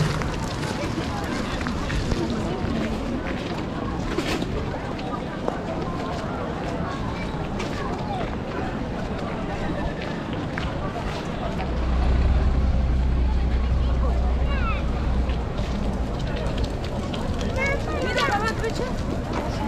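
Busy pedestrian-street ambience: passers-by talking in a general babble. A low rumble sets in a little past the middle and lasts about four seconds.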